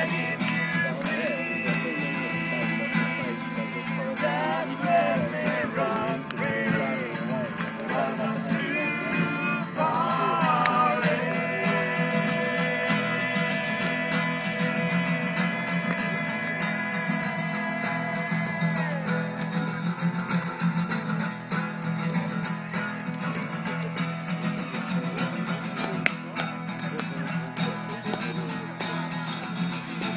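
A voice singing to guitar accompaniment, with one note held long from about eleven to nineteen seconds in.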